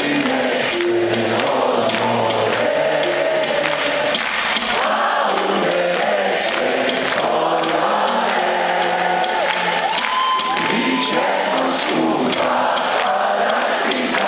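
Live band playing with a large crowd singing along, heard from within the audience.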